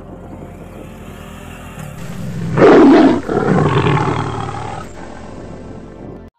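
A loud animal roar in two calls, the first and loudest about two and a half seconds in, the second following at once and fading out, over background music.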